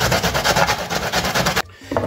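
Fresh ginger root being grated on the fine holes of a stainless steel box grater: a rapid, even rasping that cuts off suddenly about one and a half seconds in.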